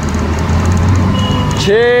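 Truck engine running with a steady low rumble, heard from inside a moving vehicle.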